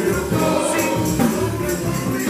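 Live gospel song with a male lead voice and backing singers over a church band, with a steady beat.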